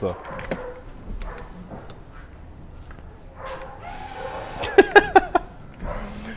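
Suzuki Jimny's headlight washer jet spraying water onto the headlight: a hiss lasting about a second, roughly four seconds in, followed by laughter.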